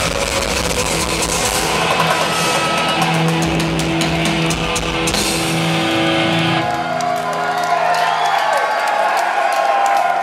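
Thrash metal band playing live: distorted electric guitars and a drum kit, loud. About two-thirds of the way through, the drums stop and held guitar notes ring out with a gliding squeal, as at a song's ending.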